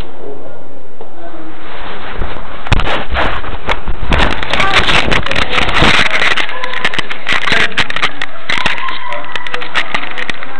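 Loud rustling and crackling, a dense run of sharp clicks that starts about two seconds in and fades near the end, from a hidden camera's microphone rubbing against whatever covers it, over muffled voices.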